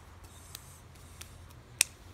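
Faint low background noise with a few light ticks, and one sharp click near the end.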